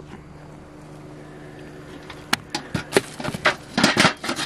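A car engine idles with a steady low hum. From about two seconds in, rusty hatchets and other scrap metal clink, knock and scrape together as they are picked up from a metal bucket.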